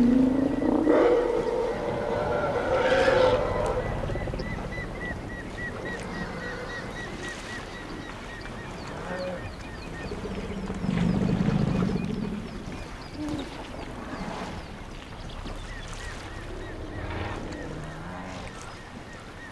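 African elephants calling: loud, pitch-gliding roars in the first few seconds, then a deep rumble about eleven seconds in, the calls of a distressed herd trying to free a calf stuck in the mud. A faint run of high chirps sounds behind them for a few seconds.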